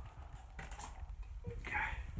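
Irregular footsteps and knocks, with a brief rustle about half a second in.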